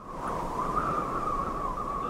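Wind sound effect in a film soundtrack: a steady rushing hiss with a wavering, whistling howl. It is the wind carried over from an outdoor scene and laid over an indoor one as non-diegetic sound.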